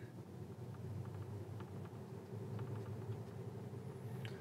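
Steady low road and tyre rumble inside the cabin of a Tesla Model 3 driving at low speed, with a few faint ticks.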